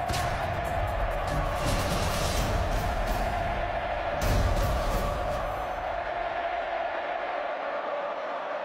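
Closing theme music with a steady, sustained tone. Heavy bass hits land at the start and again about four seconds in, and the bass thins out over the last couple of seconds.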